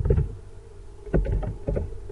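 A few computer keyboard keystrokes, short clicks clustered in the second half, over a steady low hum.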